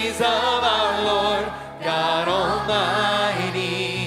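Choir singing over band accompaniment, in sung phrases with a short break between them about two seconds in.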